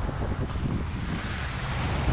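Wind buffeting the microphone, with choppy river water washing against the embankment below.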